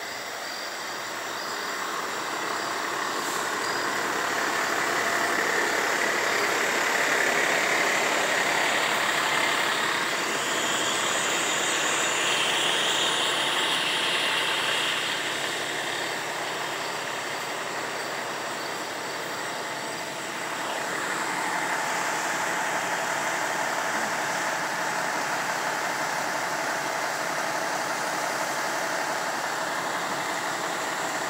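Fire truck diesel engines running steadily, louder for a stretch in the first half.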